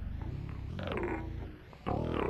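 Electro-acoustic noise music made on primitive equipment: a low, fast-pulsing rumble, with a pitched cry that glides downward about a second in. The sound thins out briefly, then comes back suddenly and loud near the end.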